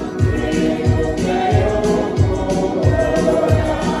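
Mixed church choir singing a hymn together in harmony through microphones, over a steady low beat of about three beats a second.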